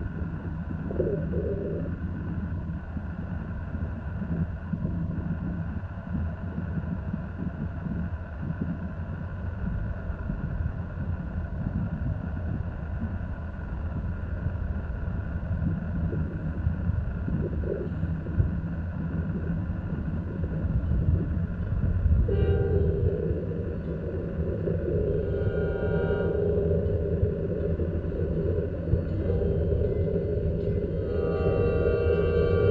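Diesel locomotives of a Portland and Western freight train running toward the listener, a steady low engine rumble that grows slightly louder as the train draws near. About two-thirds of the way in, the locomotive's air horn starts sounding a sustained chord and keeps on to the end.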